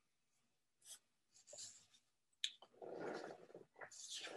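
Faint scratchy rubbing close to the microphone, with a single sharp click about two and a half seconds in, against near silence.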